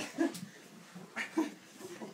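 A golden retriever making a few short vocal sounds.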